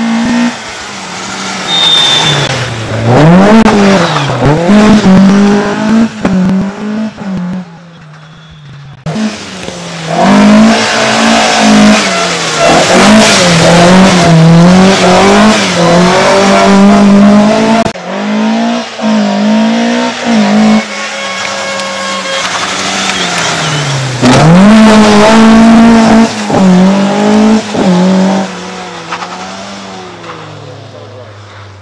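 Rally car engines revving hard through tight bends, pitch climbing and dropping again and again with gear changes and lifts off the throttle. The passes are cut together: the sound changes abruptly about 9 seconds in and again near 18 seconds.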